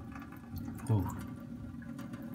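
A thin stream of tap water running steadily onto a wet whetstone. A short spoken 'ooh' comes about a second in.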